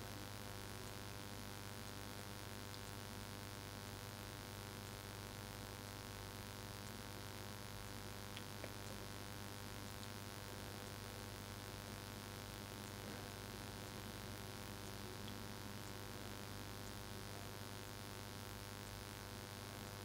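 Faint steady mains hum with a light hiss underneath, and a couple of tiny ticks about eight and a half seconds in.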